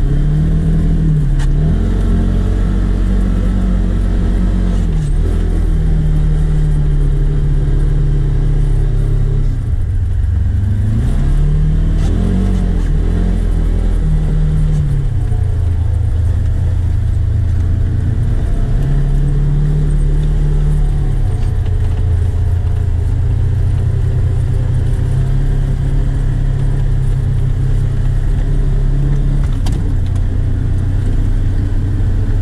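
A 2014 Honda Rancher 420 ATV's single-cylinder four-stroke engine running while the quad is ridden. The engine note rises and falls, with several steps and glides in pitch as the throttle and speed change.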